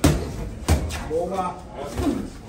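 Two sharp smacks of boxing-glove punches landing in sparring, the second about three quarters of a second after the first, followed by a brief voice.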